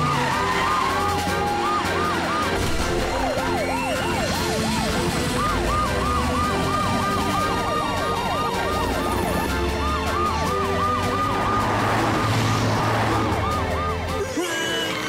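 Cartoon emergency-vehicle sirens yelping in quick, repeated rising-and-falling sweeps, at times two at once, over background music.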